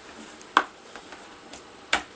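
Two sharp knocks about a second and a half apart, the first louder with a short ring, as a white plastic water pipe is set and clamped in a metal bench vise.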